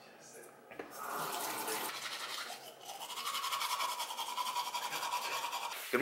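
Teeth being brushed with a toothbrush: scrubbing that starts about a second in and settles into a fast, even back-and-forth rhythm in the second half.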